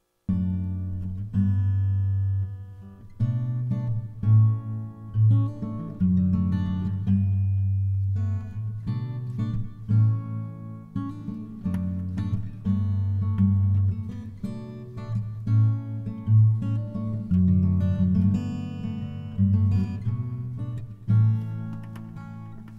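Acoustic guitar playing chords in a song's instrumental introduction, starting suddenly just after the opening silence, with strong low notes that change every second or two.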